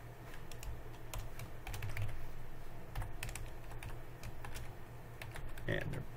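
Typing on a computer keyboard: an irregular run of quick keystrokes.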